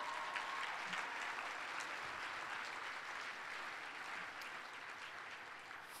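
Audience applauding, a steady patter of many hands that slowly dies down.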